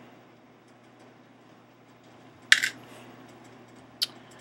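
Small hard plastic LEGO pieces clattering briefly on a hard surface about two and a half seconds in, a quick cluster of a few impacts, over a faint steady hum.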